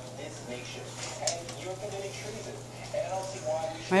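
Dogs eating from stainless steel bowls: faint clinks against the metal and chewing, with a sharper click about a second in.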